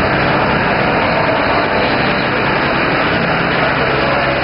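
Farm tractor engine running steadily at low revs as the tractor drives slowly past at close range, pulling a wagon.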